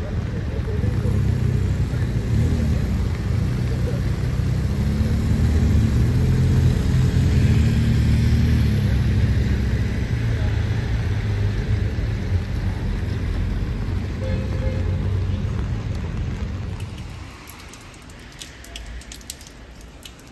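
Road traffic on a rain-wet road: vehicle engines and tyre hiss as cars pass. The sound drops away about three seconds before the end, with a few light ticks near the end.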